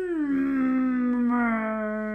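A man imitating a whale call with his voice: one long moaning tone that drops in pitch just after the start, then holds and sinks slowly.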